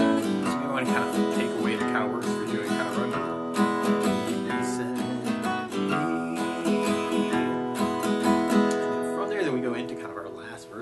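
Acoustic guitar played in a slow country waltz feel: single bass notes on the low strings alternating with down-up strums of the chords.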